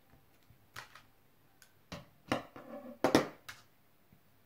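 Scissors snipping sewing thread, then a scattered run of small sharp clicks and taps from handling at a desk, the loudest about three seconds in as the scissors are set down.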